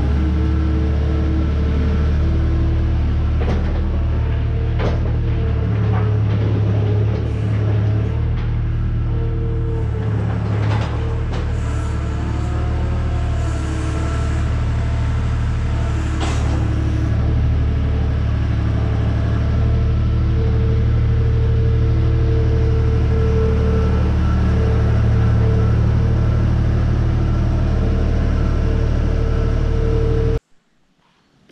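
Skid steer loader's diesel engine running steadily nearby, with its hydraulics whining in changing tones and a few sharp metal clanks, as it pulls a steel cattle chute out of the barn.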